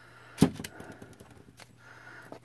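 A plastic paint squeeze bottle set down on a work surface with one sharp knock about half a second in, followed by a few light clicks as bottles are handled.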